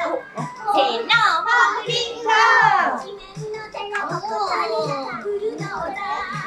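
A children's song playing from a portable CD player with a steady beat. Young children's voices sing and call out over it.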